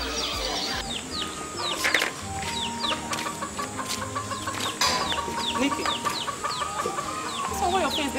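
Chickens clucking and small birds chirping in quick, falling chirps, over background music with long held notes.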